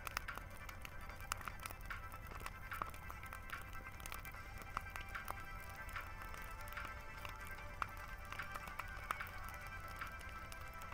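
Large wood bonfire crackling, with irregular sharp pops from the burning wood, over background music with steady held tones.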